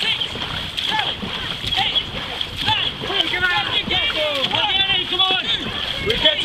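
Dragon boat crew paddling hard: rhythmic splashing of paddle blades driving through the water, with wordless shouted calls from the crew that grow thicker about halfway through.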